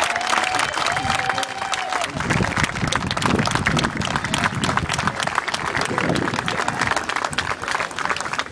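Crowd and teammates applauding, with a few voices calling out in the first couple of seconds.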